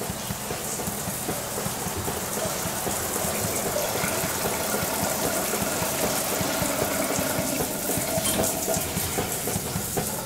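Shower spray running steadily onto a tiled shower floor and the plastic case of a refrigerant recovery machine: a continuous rush of water.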